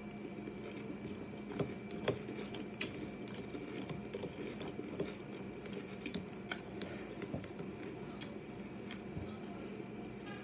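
Close-up chewing of crunchy Lucky Charms Honey Clovers cereal, with scattered soft crunches and sharp little clicks, one or two a second. A metal spoon scoops in a plastic container about six seconds in.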